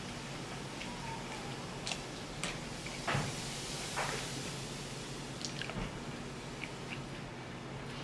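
Close-up chewing of food, with scattered sharp clicks and taps, loudest about three seconds in, as wooden chopsticks pick through beef in a plastic takeout tray. Under it runs a low steady hum.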